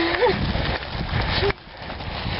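Mountain bikes riding over a loose gravel track: tyres crunching and the bikes rattling over stones, with wind rumbling on the microphone. The noise drops off sharply about one and a half seconds in.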